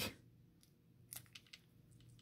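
Near silence with a few faint, short clicks about a second in and near the end: a trading card shifting loosely inside its BCW plastic holder as it is handled. The card is not held snug, so it rattles around in the holder.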